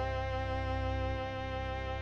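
Studio orchestra's bowed strings holding a long sustained chord, with a steady low bass underneath.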